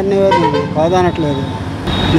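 A vehicle horn toots in one steady note for about a second, over a man's speech and street traffic.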